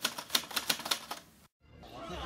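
Typewriter-style sound effect: a rapid run of sharp key clicks, about eight a second, stopping abruptly about a second and a half in.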